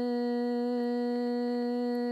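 A steady drone held on one unchanging low-middle note, rich in overtones, with no break or wavering, and a few faint clicks.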